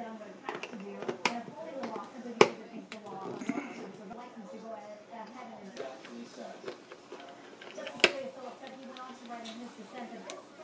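Indistinct background speech from a broadcast runs on throughout. Two sharp clicks stand out, about two and a half and eight seconds in: a metal screwdriver knocking against the screw terminals of the thermostat board.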